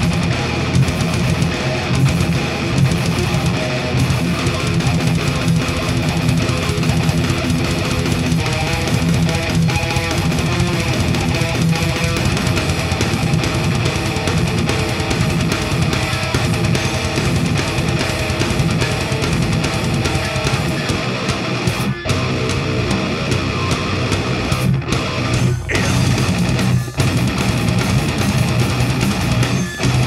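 A heavy metal band playing live at full volume: a drum kit with distorted electric guitars and bass. There are a few short breaks in the last third.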